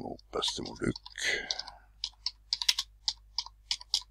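Typing on a computer keyboard: a quick run of about a dozen keystrokes in the second half.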